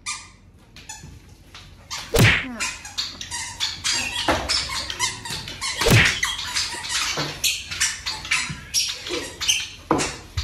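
A belt slapping and sweeping on a tiled floor, with bare feet scuffing and squeaking on the tiles: a run of short sharp hits, the loudest about two and six seconds in.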